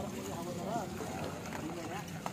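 Several men talking indistinctly in the background, over a steady wash of harbour noise.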